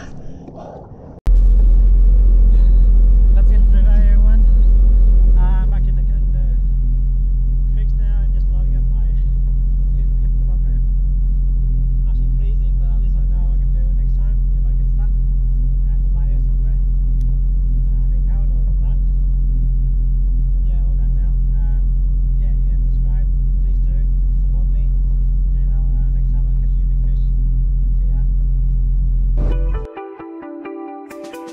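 Sea-Doo jet ski engine running steadily with a low hum. It starts suddenly about a second in and is louder for the first few seconds before settling to a slightly lower, even level.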